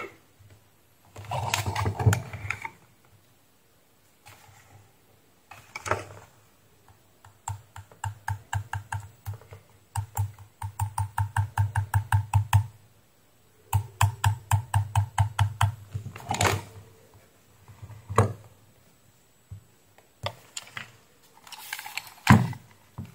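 Quick fingertip tapping on a headset's boom microphone, about six taps a second in runs of a few seconds, testing that the repaired mic records; a few single knocks and handling sounds come before and after the runs.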